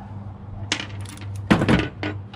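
Small metal parts of a fire-damaged computer case clinking as they are handled, a few light clicks and then a louder metallic clatter about one and a half seconds in.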